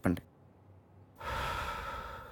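A word ends just at the start, then after a second of quiet a man lets out a long, breathy sigh lasting about a second.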